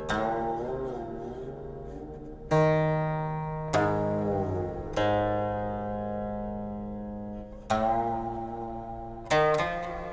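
Guqin playing a slow phrase of plucked notes, each ringing out and fading over a second or more. On some notes the pitch bends and slides as the string is stopped and glided along after the pluck.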